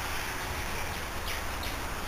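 Steady background hiss with a few faint bird chirps about a second and a half in.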